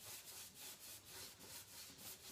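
Faint, quick scrubbing strokes of a nearly dry paintbrush on bare pine, about five strokes a second, as paint is dry-brushed onto the wood.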